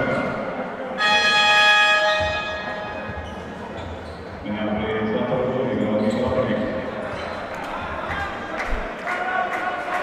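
A basketball arena horn sounds once about a second in, a steady tone held for about a second and dying away in the hall's echo. It is likely the signal for a substitution during the stoppage after a foul. Crowd and voices murmur around it in the large hall.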